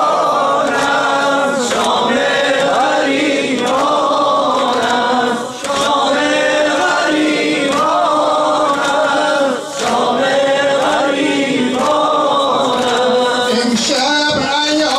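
A Shia Muharram nohe (mourning lament) chanted by male voices in a repeating melodic phrase, the congregation singing with the lead. Faint slaps of sinezani chest-beating run along with it, with short breaks between phrases.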